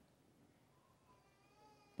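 Near silence: quiet room tone, with a faint, high, drawn-out tone that wavers slightly in the second half.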